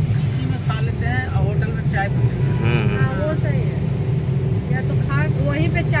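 Steady low road and engine rumble heard inside a moving car's cabin on a wet road, with voices talking over it.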